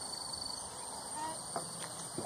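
Insects trilling steadily at a high pitch in summer outdoor ambience, with a pulsing chirp early on and a faint click or two.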